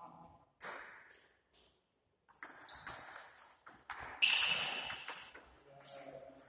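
Table tennis ball clicking off the paddles and the table in a rally, a quick series of sharp hits. About four seconds in comes the loudest hit, a sharp crack with a brief ringing tail.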